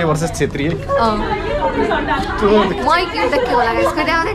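Speech only: several people talking over one another, one voice close and others around it.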